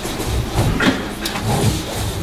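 A desk chair rolling and knocking as someone gets up from it, with a run of clicks and knocks and a low rumble over about the middle second.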